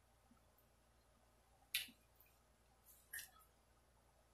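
Two short, sharp clicks about a second and a half apart, over near silence.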